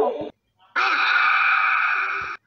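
Edited-in animal-cry sound effects: the end of a wavering, neigh-like call cuts off abruptly, then after a short gap a steady, hissing, rasping cry about a second and a half long stops just as suddenly.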